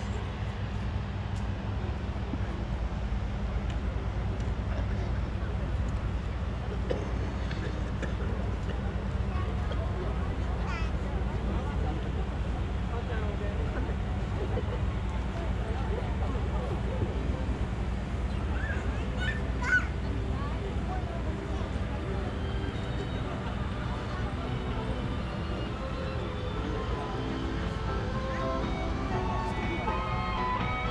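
Murmur of a strolling crowd's chatter over a steady low rumble, with one brief sharp sound about twenty seconds in. Music with held notes fades in near the end.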